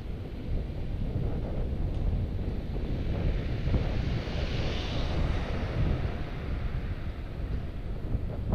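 Wind buffeting the microphone of a camera on a moving bicycle, a steady low rumble with road noise. A hiss swells and fades around the middle as a car drives past.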